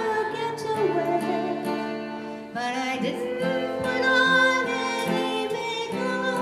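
A woman singing into a microphone while strumming an acoustic guitar, a phrase ending about two and a half seconds in and the next starting right after.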